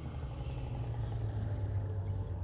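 Horror-trailer sound design: a deep, steady low rumble under a rushing whoosh that comes in at the start and fades over about two seconds.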